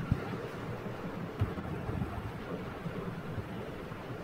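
Steady background noise and hiss from an open video-call microphone, with a few soft low knocks.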